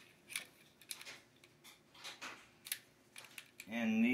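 Light, irregular metallic clicks and scrapes as the parts of a disassembled Smith & Wesson M&P Shield pistol (slide, barrel, recoil spring) are handled and fitted together. A voice starts near the end.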